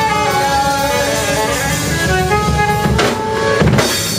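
Live rock band with electric guitars, bass, drum kit and saxophones playing the closing bars of a song: held notes over the drums, with heavy drum hits and crashes about three seconds in and again near the end.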